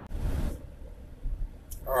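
Low, steady rumble of a car's interior while driving, opening with a rush of noise that lasts about half a second, and a short click just before the end.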